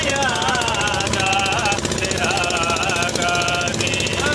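A motor boat's engine running with a steady rapid knocking pulse, under a voice in long, wavering pitched notes.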